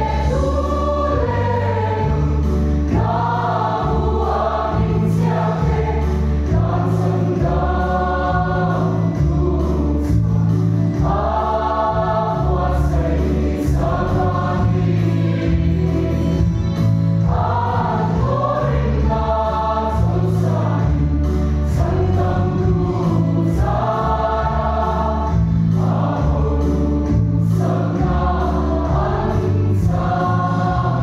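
Large mixed choir of men and women singing a hymn in parts, in phrases of a few seconds, over low sustained bass notes.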